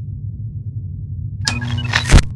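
Logo sting sound effect: a steady low rumbling drone, then about one and a half seconds in, a sudden bright burst with short ringing tones that grows louder toward the end.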